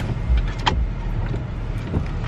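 Low steady rumble inside a car cabin with the engine running, with a few light clicks, the sharpest less than a second in.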